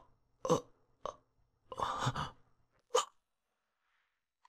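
A man's short, guttural groans and gasps of pain, four separate bursts, the last about three seconds in, with no words.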